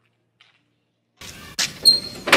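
Near silence, then a little over a second in, two sharp metallic bangs on a sheet-metal gate; the second gives a brief ring, as of knocking on the gate.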